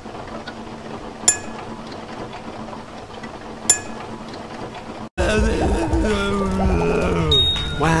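Quiet steady background with two sharp, ringing clinks about two and a half seconds apart. Just past halfway the sound cuts out abruptly, and a cartoon character's wavering wail with a laugh follows.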